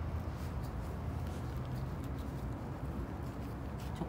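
Steady low room hum with a few faint small clicks and rustles from hands pressing moss and potting soil around a succulent in a small pot.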